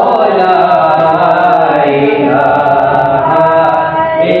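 Voices of a man and two boys chanting an Islamic devotional recitation together, in long, slowly wavering melodic lines without a break.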